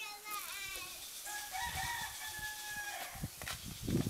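A rooster crowing once: a short wavering opening, then one long held note that fades out about three seconds in. Low rumbling noise comes in partway through, with a low thump near the end.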